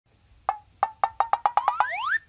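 Comic sound effect: wood-block knocks that speed up, about nine in a second and a half, running into a rising whistle glide near the end.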